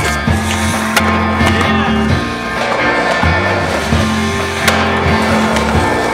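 Background music with a steady bassline, mixed with skateboard sounds: urethane wheels rolling on concrete and sharp clacks of the board about a second in and again after about four and a half seconds.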